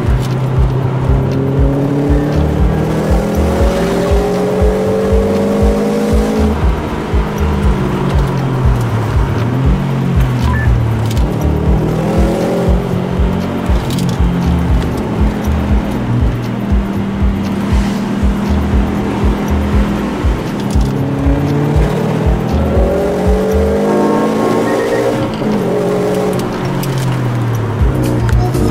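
Background music with a steady beat, mixed with a car engine revving up, rising in pitch and dropping back at each gear change several times.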